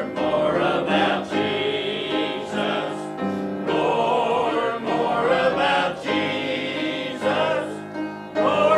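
Mixed choir of men and women singing a hymn together, in sustained phrases with short breaths between them.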